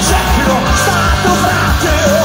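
Live hard rock band playing loud: distorted electric guitars, bass and drums under a lead singer's shouted vocal, recorded from within the crowd.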